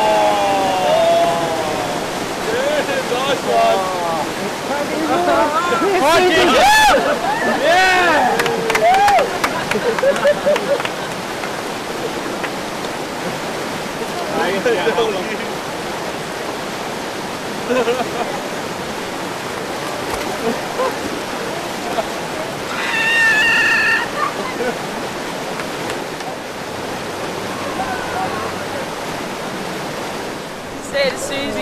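Whitewater rapids rushing steadily around a canoe. People shout and whoop over the water, mostly in the first ten seconds, with a short high call again about two-thirds of the way through.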